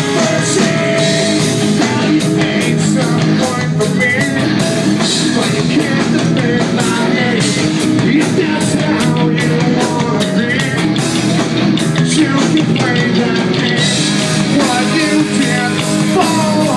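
Live rock band playing loud and without a break: distorted electric guitar and a drum kit, with a male singer on a handheld microphone.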